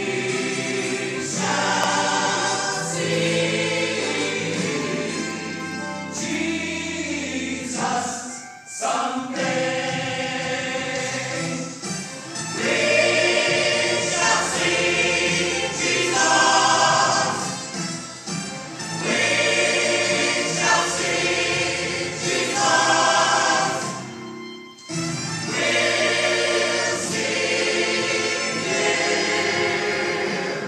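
Mixed church choir singing a hymn in parts, with brief pauses for breath between phrases.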